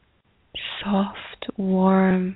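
A woman's soft, breathy voice: a whispered, breath-like sound begins about half a second in, then a short steady voiced tone is held at one pitch and stops just after the end.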